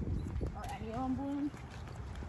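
Footsteps on a paved path, an uneven patter of soft steps while walking. A short stretch of voice comes in the middle.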